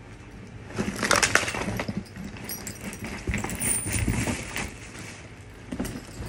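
Rustling, crinkling and knocking of a packed travel bag and its contents being handled and pulled about, loudest about a second in.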